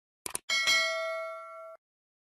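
Subscribe-button animation sound effect: a quick double mouse click, then a bell ding struck twice in quick succession. It rings for about a second and cuts off suddenly.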